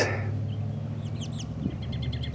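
Songbird chirping: a quick run of short high notes about a second in and a few fainter chirps near the end, over a steady low hum.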